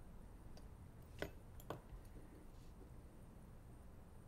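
Near silence, broken by two small, sharp clicks about half a second apart, a little over a second in: a watchmaker's small metal tools touching the watch movement as a screwdriver is exchanged for tweezers.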